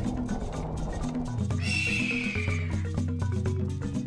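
Background music with marimba-like percussion notes. About one and a half seconds in, a horse's whinny sound effect lasts about a second, falling in pitch.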